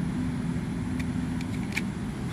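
Steady low mechanical rumble with a constant low hum underneath, and a few faint ticks about halfway through.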